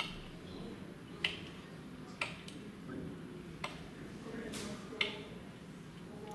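Hafted stone axe chopping into a standing tree trunk, five sharp knocks at uneven intervals of about a second, heard from a display screen's small speaker.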